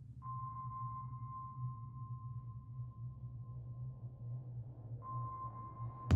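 A steady electronic beep-like tone at one high pitch, held for about four and a half seconds, breaking off for a moment and resuming about five seconds in, over a low steady hum.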